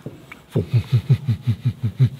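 A deep, guttural vocal sound from a person: a fast run of low grunts, about seven a second, each dropping in pitch, starting about half a second in. It is an ogre-like growl.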